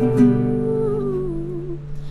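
A young woman's voice holds one long note that slides down in pitch and fades out, over an acoustic guitar chord strummed once just after the start and left to ring.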